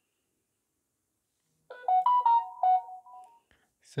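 Samsung Galaxy S21 text message notification tone: a short run of quick stepped musical notes, starting a little under two seconds in and lasting under two seconds. It is still the old default tone, because the newly selected sound has not been saved.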